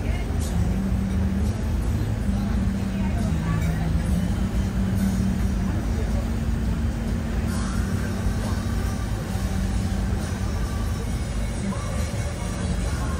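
Steady low drone of a river cruise boat's engine, heard from inside the boat's glass-walled cabin, with voices in the background.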